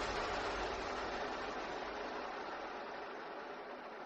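The decaying tail of an outro music hit: a steady hiss with a low rumble that slowly dies away.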